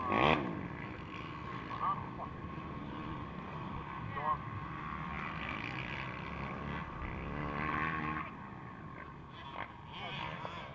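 Dirt bike engines running, with revs that rise and fall several times.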